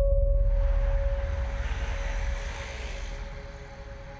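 A sound-design hit: a deep rumble that starts suddenly, with a steady hum on top and a hiss above, slowly fading over a few seconds.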